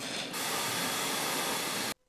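Steady hiss of white noise, the masking noise a courtroom plays during a bench conference so the sidebar talk cannot be heard. It grows louder about a third of a second in and cuts off suddenly near the end.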